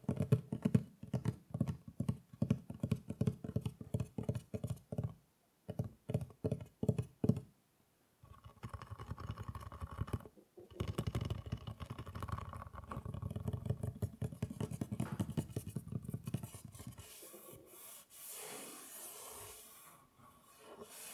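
Fingertips tapping rapidly on the lid of a wooden chess box for the first several seconds. Then fingernails scratch and rub steadily across the wood, turning to a lighter, quieter rub near the end.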